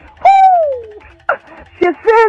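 A high voice gives one long falling 'ooh' cry, sliding down in pitch over about a second, followed by two short vocal sounds.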